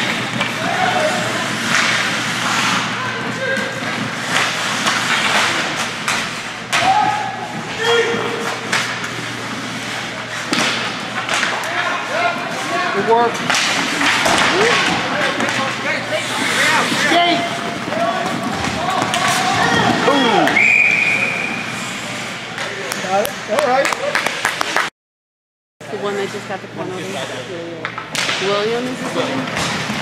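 Indoor ice-rink game sound: indistinct spectator voices and shouts over repeated sharp clacks and thuds of sticks, puck and boards. A single short steady whistle sounds about two-thirds of the way in, and the audio cuts out for under a second soon after.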